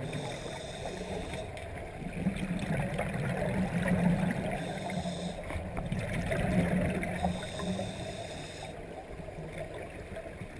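Scuba diver breathing through a regulator underwater: hissing inhalations alternating with rumbling, bubbling exhalations, repeating over several breaths.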